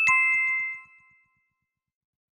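Two-note chime sound effect: a higher note and then a lower one struck right after it, ringing clearly and fading out within about a second.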